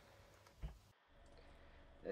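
Near silence: faint room tone, with one soft click about a third of the way in.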